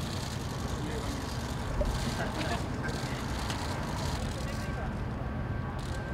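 Outdoor city-street ambience: a steady rumble of traffic and wind, with faint indistinct voices and a few light clicks.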